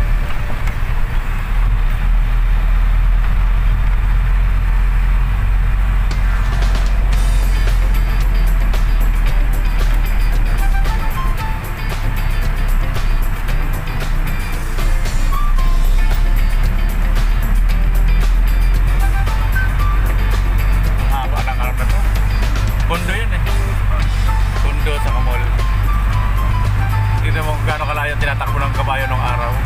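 Steady low engine drone of a moving vehicle heard from inside the cab, with music playing over it.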